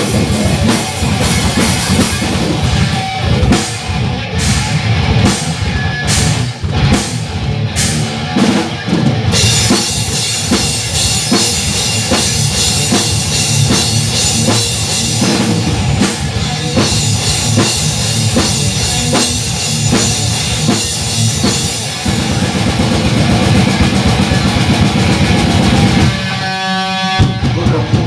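A live grindcore duo, distorted electric guitar and drum kit, playing loud and dense with crashing cymbals. Near the end the playing breaks off for about a second, leaving a single ringing pitched note.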